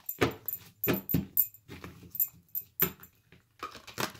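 A deck of tarot cards being shuffled by hand in an overhand shuffle: a string of irregular papery slaps and clicks, with a short pause about three seconds in.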